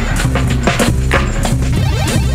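Experimental instrumental beat played live on a Roland SP-404SX sampler: repeated punchy drum hits over a sustained low bass line, with short falling pitched sounds between the hits.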